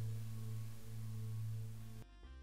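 A steady low drone tone, with a fainter higher tone swelling and fading above it about twice a second, over a light hiss.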